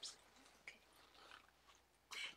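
Near silence, with two faint brief mouth sounds of someone drinking from a water bottle: one right at the start and one about two-thirds of a second in.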